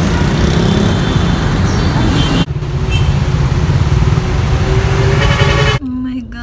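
Loud road traffic noise: vehicle engines running close by with a heavy, steady rumble, which dips for a moment about two and a half seconds in.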